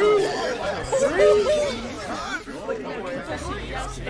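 Several voices talking over one another at once, a babble of overlapping chatter.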